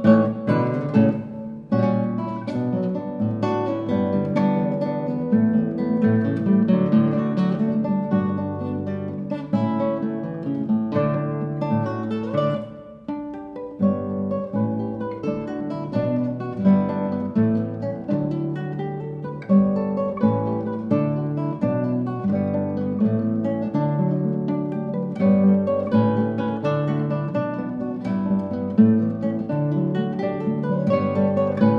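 Two classical guitars playing an Irish-flavoured duo piece together: a busy plucked melody over a bass line, with a brief drop in level about thirteen seconds in.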